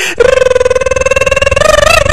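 A long, loud, drawn-out cry held at one pitch with a rough flutter, rising a little near the end.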